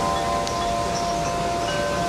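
Wind chimes ringing in the breeze: several tones hold and fade, and a new, higher tone is struck near the end. Wind rushes on the microphone underneath.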